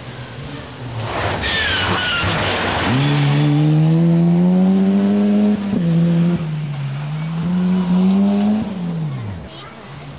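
Rally car on a gravel special stage going past at full throttle. It starts with a loud hissing rush, then the engine climbs in pitch, shifts up about six seconds in and climbs again. The pitch falls and fades near the end as the car goes away.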